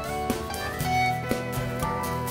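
Live rock band playing an instrumental passage: a Les Paul-style electric guitar over bass guitar and drums, with drum hits about twice a second.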